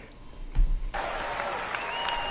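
Stand-up comedy audience applauding in the special playing back, an even wash of clapping that comes in about a second in, after a low thump.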